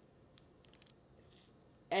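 A few faint, light clicks of handling noise as a small plastic toy soldier is moved about in the hand.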